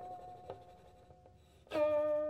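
Guqin music: a held plucked note fades away, with a faint tap about half a second in, and then a new string is plucked sharply near the end.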